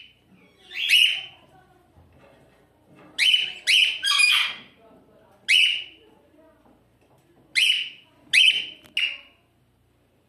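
Cockatiel giving a series of short, shrill chirping calls, about eight of them in irregular bunches with gaps of a second or two between.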